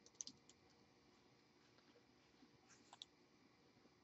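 A few faint computer keyboard keystrokes just after the start, then near-silent room tone, with a couple of faint mouse clicks about three seconds in.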